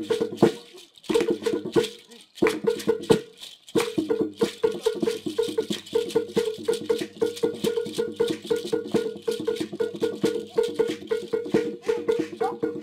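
Lively traditional dance music with a steady shaker rattle and a quick, repeating melody of pitched notes. The music drops out briefly a few times in the first four seconds, then runs on evenly.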